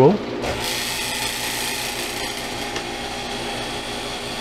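Vacuum pump of a Harvest Right freeze dryer starting up about half a second in and then running steadily, as the machine restarts into its drying cycle.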